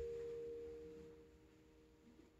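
The last sustained notes of a piano passage, played over loudspeakers, ringing on as a few steady tones and fading away to near silence by the end.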